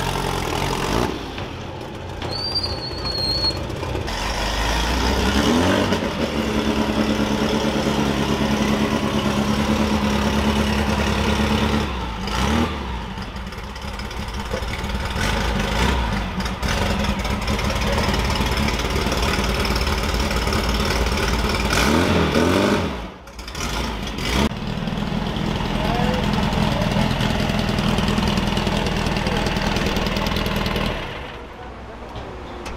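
Off-road race car engines idling, with a couple of rising revs, about five seconds in and again about twenty-two seconds in; the engine sound changes abruptly several times as one car gives way to the next.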